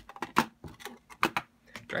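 A run of sharp clicks and taps from metal watercolor palette tins being handled, closed and set down on the desk, about seven or eight in two seconds at uneven spacing.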